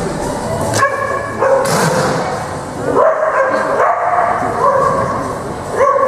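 A dog barking and yipping repeatedly as it runs an agility course.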